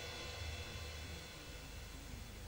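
Faint steady drone of several held tones over a low hum.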